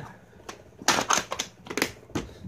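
Plastic VHS clamshell case being shut and handled: a quick series of sharp plastic clicks and clacks.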